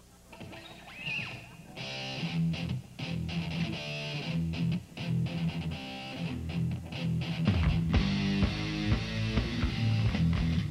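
Live rock band opening a song: electric guitars play a building intro, and the full band comes in much louder near the end, with heavy bass and drum hits.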